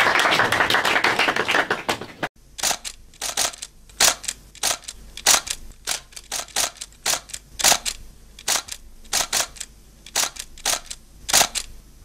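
Small audience applauding, cut off abruptly about two seconds in. Then comes a string of sharp, irregular clicks, two or three a second, over a faint low hum.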